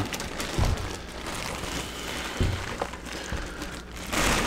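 Clear plastic bag rustling as a computer case wrapped in it is handled on a table, with a few soft knocks.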